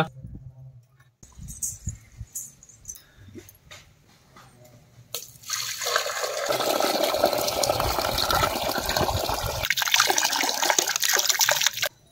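Water poured in a steady stream from a red clay pot into a black clay cooking pot, starting about five seconds in with a brief break near the end; some of it spills outside the pot. A few faint knocks come before the pour.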